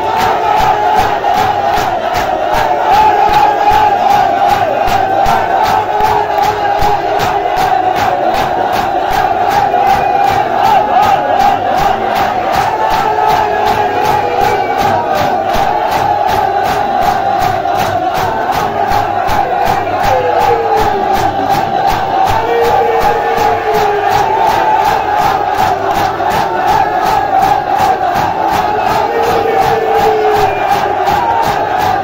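A crowd of men chanting a nauha lament together in a Shia matam, beating their bare chests with their hands in unison, so the slaps form a steady beat under the chanting voices.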